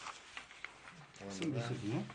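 Sheets of printed paper handled with a few faint, short crackles in the first second, then a man's voice speaking.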